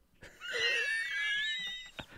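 A man's high-pitched, wheezing laugh that starts about half a second in and lasts about a second and a half.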